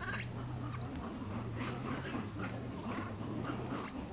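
Infant vervet monkey giving short, thin, high-pitched squealing calls: one just after the start, one about a second in and one at the very end, over a steady low hum.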